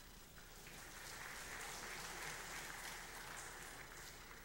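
Audience applauding, fairly faint: it swells about half a second in and tapers off toward the end.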